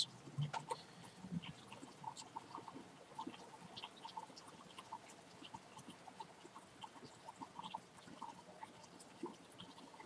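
Faint steady rain with irregular drops of water falling around the microphone, each a short tick.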